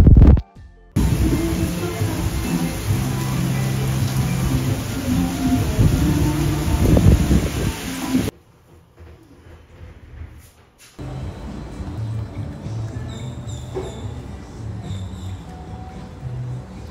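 Heavy rain pouring down on a city street: a loud, steady hiss with music-like held low notes underneath. It cuts off suddenly about eight seconds in, and after a few near-quiet seconds music alone continues more quietly.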